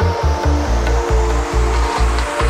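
Psychedelic chillout electronic track: a pulsing synth bass line and held synth notes under a rising noise sweep.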